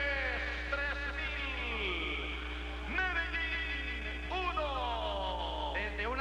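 A sports commentator's drawn-out goal cry: a man's voice in long held calls that slide down in pitch, over a steady low hum from the old recording.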